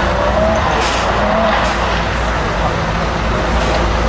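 Lamborghini Huracán's V10 engine running as it approaches in slow traffic, its note rising briefly twice in the first half, over steady road and traffic noise.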